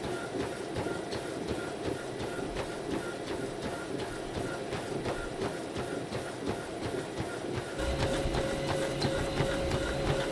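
Running footfalls of Hoka Mach 6 shoes striking a Matrix treadmill belt in a steady rhythm of about three strikes a second, over the treadmill's running hum. Near the end the sound gets louder and fuller, with a steady hum added.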